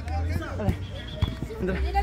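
Voices shouting and talking beside a small-sided football pitch, with two sharp knocks of a ball being kicked, about a third of the way in and just past halfway.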